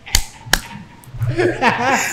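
Two sharp hand claps in quick succession, then a man laughing from about a second in.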